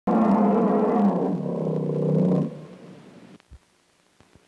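A tiger's roar, used as a sound effect: one long, loud roar lasting about two and a half seconds, then dying away.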